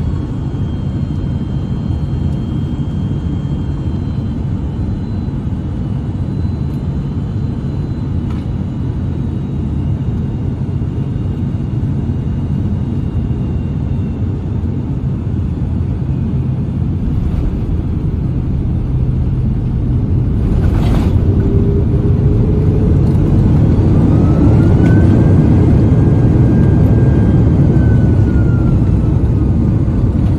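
Airbus A330-300 cabin noise heard beside the engine: a steady engine and airflow rumble on final approach, with faint whines sinking in pitch. About two-thirds of the way through there is a brief thud. The rumble then grows louder, with a whine that rises, holds and falls away as the engines spool up for reverse thrust on the landing rollout.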